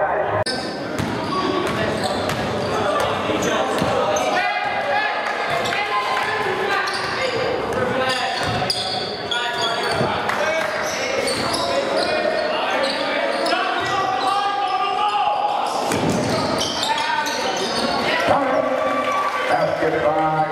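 A basketball bouncing on a gym's hardwood floor during play, with short impacts heard among crowd voices and shouts that echo in the hall.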